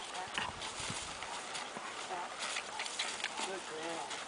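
Horse walking on dry dirt, its hooves giving irregular soft steps and clicks. A short wavering call sounds near the end.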